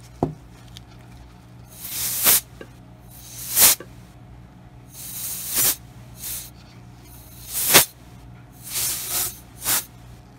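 Canned air hissing in about seven short blasts, each swelling and then cutting off sharply, to blow wet alcohol ink across a glass ornament. A short knock just as it begins.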